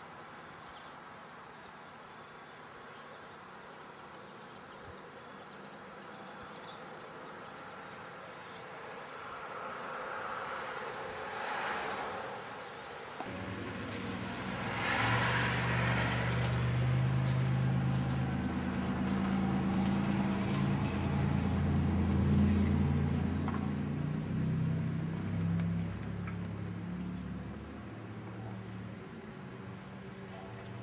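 Crickets chirping: a steady high trill at first, then a rhythmic pulsing chirp from about halfway on. A low engine-like drone comes in with the chirping, rises to the loudest sound in the middle and fades near the end.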